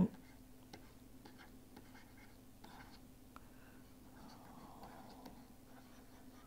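Stylus writing on a pen tablet: faint, irregular scratches and light taps as words are hand-written, over a faint steady hum.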